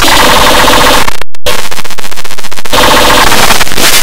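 Loud, harsh, heavily distorted noise. It cuts out briefly just over a second in, then breaks into a rapid, even stutter of pulses before returning to a steady distorted drone.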